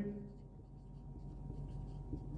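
Felt-tip marker writing on a whiteboard, faint short strokes as figures are written.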